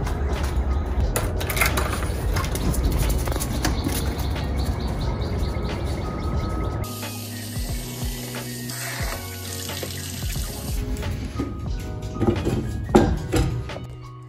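Background music. About seven seconds in, a kitchen tap runs into a stainless steel dog bowl for a few seconds as the bowl is rinsed.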